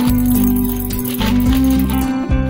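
Background music, with Tic Tac candies rattling out of their plastic box and clicking into a glass bowl.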